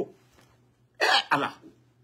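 A man coughs twice in quick succession about a second in, two short rough bursts.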